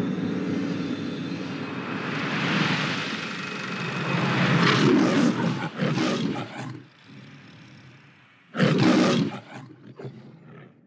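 The MGM logo's lion roaring: a long, deep roar through most of the first seven seconds, then a second, shorter roar near the end.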